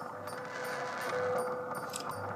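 WWV time-signal broadcast from Fort Collins, received on an HF radio: a steady tone through shortwave static, with the seconds pulsing once a second.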